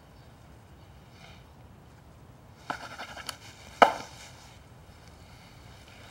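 A handful of sharp knocks and clicks about three seconds in, the loudest just before the four-second mark, over low room noise.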